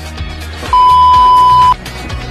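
Background music, cut into about a third of the way in by a loud, steady electronic beep that lasts about a second.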